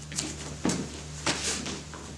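Short swishes and soft thuds, a handful in two seconds, from a karate partner drill: gi cloth snapping and bare feet stepping on foam mats as a punch is met with a cover and a counter.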